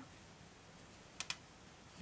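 Near-quiet room tone with two faint, quick clicks a little past a second in, from a crochet hook being worked through yarn in the hands.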